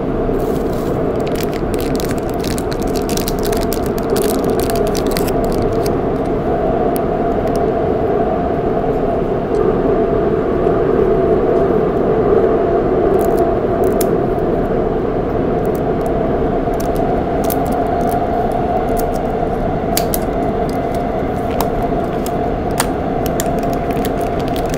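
Steady running noise of a Shinbundang Line metro train heard from inside the carriage in the tunnel: a loud, even rumble with a droning hum. Over it, clear plastic packaging crinkles and crackles in the hands, mostly in the first few seconds and again in the second half.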